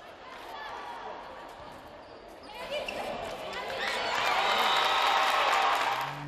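Indoor women's volleyball match: the ball being struck and players' shouts over hall noise, with voices swelling into loud shouting and cheering in the second half.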